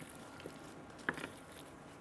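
Faint, soft sounds of a wooden spatula pressing and spreading a wet diced-potato mixture in a glass baking dish, with a light tap about a second in.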